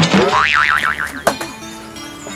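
A cartoon-style comic 'boing' sound effect. It starts suddenly with a fast wobbling, warbling pitch and dies away after about a second, leaving quiet steady background music tones.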